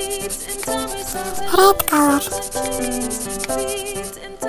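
Colored pencil scribbling and rubbing on paper as an area is filled in with colour, over a light children's song melody. A short gliding voice-like sound comes in the middle and is the loudest moment.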